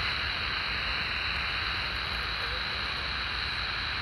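Steady static hiss from a HanRongDa HRD-737 pocket receiver's speaker, tuned to 27.010 MHz in the CB band. It is the empty channel between two transmissions of a CB conversation.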